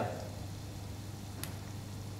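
Quiet steady low hum with a faint hiss from soffritto vegetables cooking gently in a pan on a gas burner. A single light click comes about one and a half seconds in.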